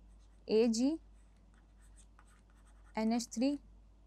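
Faint scratching and tapping of a stylus writing on a pen tablet: short, quick strokes as a formula is written out. A short spoken word about half a second in and another about three seconds in are louder than the writing.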